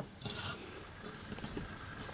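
Faint rubbing and a few light clicks of a die-cast toy car and a toy truck with a tilting tray bed being handled on a wooden tabletop, as the car is lined up to be loaded onto the lowered tray.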